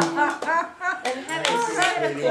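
A small group clapping by hand, scattered claps mixed with voices, just as a long held sung note cuts off.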